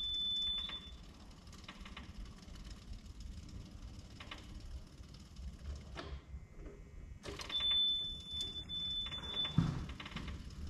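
Yanmar VIO50-6 mini excavator with its ignition key cycled on twice. Each time a high-pitched key-on beep sounds for about two seconds and the electric fuel pump runs faintly, priming the fuel system to refill the filter bowl and purge air. The pump noise cuts off about six seconds in as the key goes off, then starts again with the second beep.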